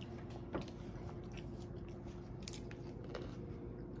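A child chewing a mouthful of poached egg set in gelatin aspic, faint, with a few soft short clicks, over a steady low room hum.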